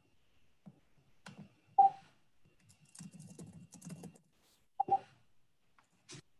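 Typing on a computer keyboard: a quick run of keystrokes in the middle, with a few single, sharper key or mouse clicks around it, the loudest about two seconds in.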